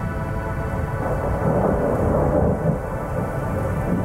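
A rumble of thunder swelling about a second in and rolling on, over a rain wash and a steady ambient synth drone.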